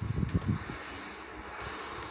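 A few soft low thumps in the first half-second or so, then faint steady background noise.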